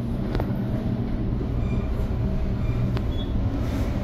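Elevator car travelling upward, heard from inside the car: a steady low rumble and hum, with a faint click early on and another near the end.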